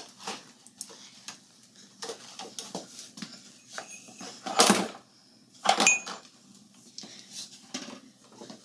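A broom sweeping a broken ceramic mug and its snapped-off handle across the floor into a plastic dustpan: light bristle scrapes and clicks, with two louder clatters a little past halfway as the pieces go into the pan, the second with a short ceramic ring.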